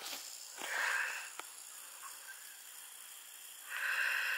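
A person's faint breathing, two soft breaths about three seconds apart, with one light click in between.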